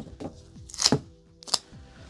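Two short handling sounds off the table: a brief rustle about a second in, then a sharp click half a second later, over faint background music.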